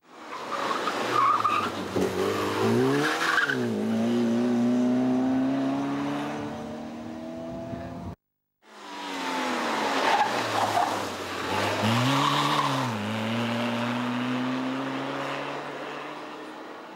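Two small Fiat Cinquecento hillclimb cars, one after the other, driven hard through a coned chicane: each engine dips and rises in pitch around the turn, then revs steadily upward as the car pulls away, with brief tyre squeal. A sudden cut with a moment of silence falls about halfway, between the two cars.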